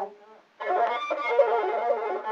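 Ethiopian azmari music led by a masinko, the one-string bowed fiddle, playing a wavering melody. It breaks off for about half a second near the start, then comes back in.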